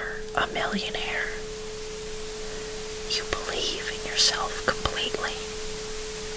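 Whispered affirmations in two phrases, one at the start and one from about three to five seconds in, over a steady bed of brown noise and a steady 432 Hz tone.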